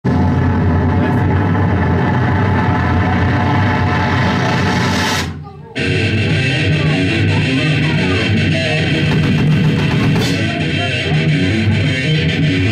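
Live rock band playing loud, with electric guitars and drums; the band breaks off briefly about five seconds in, then comes straight back in.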